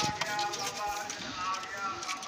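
Pigeons in a loft: a flap of wings at the start, then a scattering of short light clicks and taps.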